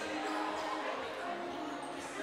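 Indoor gym ambience: a basketball bouncing on the court and distant voices in the hall.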